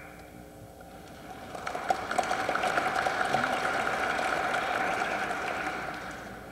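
Audience applauding, swelling about a second and a half in and tapering off near the end.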